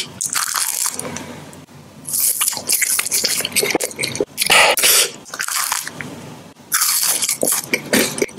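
Close-miked chewing of a soft, chocolate-cream-filled marshmallow, with wet, smacking mouth sounds in several loud bouts separated by quieter pauses.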